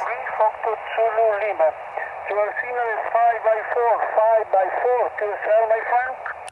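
A distant amateur station's voice received on 10-meter single sideband through a Yaesu FT-818 transceiver's speaker. The speech is thin and narrow, with steady band hiss under it.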